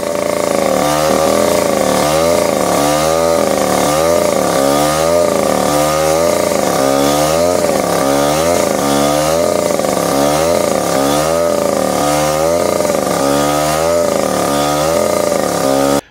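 Petrol-engined abrasive rail saw cutting through a steel rail, the two-stroke engine running hard under load, its pitch rising and falling in a steady cycle a little faster than once a second.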